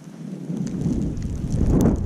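Wind buffeting the microphone of an action camera during a fast downhill run on snow, a low rumble that swells about half a second in and keeps growing louder, with the hiss of sliding over packed snow beneath it.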